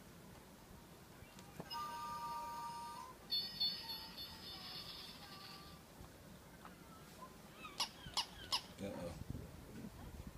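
Battery-powered baby toy playing short electronic tunes when its button is pressed: a steady jingle, then a brighter run of beeping tones, followed near the end by three sharp clicks.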